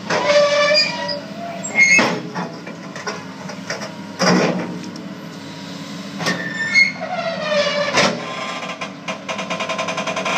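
Tracked excavator's toothed steel bucket grinding and scraping into broken concrete and brick, giving high metallic squeals that slide down in pitch and sharp knocks about every two seconds, over the steady running of the machine's engine.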